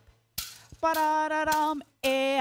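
Pū'ili (split-bamboo hula rattle) struck once, a sharp clack that rings briefly, then a woman's voice holding one steady note for about a second with a few light clicks through it.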